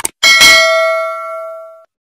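A short mouse-click sound effect, then a bright notification-bell ding with several ringing tones that fades and stops just before the end. It is the click-and-bell effect of an animated subscribe-button and notification-bell end screen.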